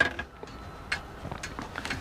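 A few light, scattered clicks and taps from gloved hands handling a small screw and a tube of construction adhesive, over faint room noise.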